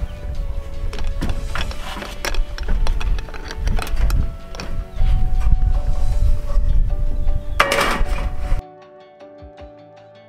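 Strong wind buffeting the microphone in a heavy low rumble, with scattered sharp knocks from the sheet-metal flashing being handled, under background guitar music. About eight and a half seconds in, the wind and knocks cut off abruptly, leaving only the music.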